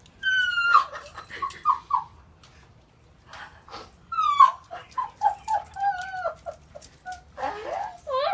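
A dog whining: a long high whine that falls in pitch, then a string of short whines, and the pattern comes again about four seconds in.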